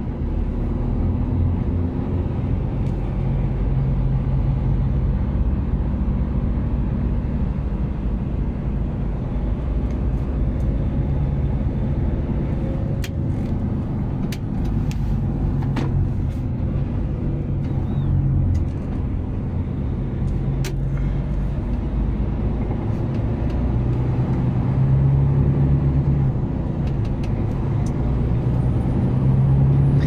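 Heavy truck's engine and road noise heard from inside the cab while driving, a steady low drone that swells and eases at times. A few sharp clicks occur about halfway through.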